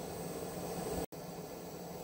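Lapidary bench motor running quietly: a steady, faint hiss-like hum with no knocking. The sound drops out completely for an instant just after a second in.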